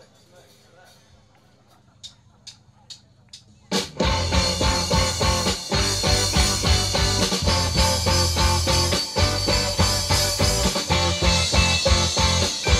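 A count-in of four sharp clicks, about half a second apart, then about four seconds in a live rock band (two electric guitars, electric bass and drum kit) comes in together at full volume, playing the song's instrumental intro with a driving beat.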